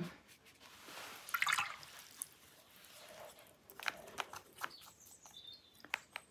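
Faint wet sounds of a watercolour brush: swishing in water and working wet paint in a palette pan, with a few light taps and clicks about four seconds in.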